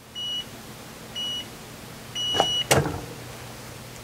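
Heat press timer beeping three times, two short beeps and then a longer one, signalling the end of the timed application. Right after, a sharp clack as the sports ball heat press's platen is released and lifted off the ball.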